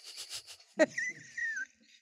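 A woman laughing: quick breathy pulses at first, then a high-pitched squealing laugh from about a second in.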